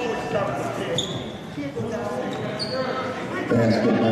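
A basketball bouncing on a hardwood gym floor amid echoing voices of players and spectators, with a couple of short high squeaks, likely sneakers on the court. Voices grow louder near the end.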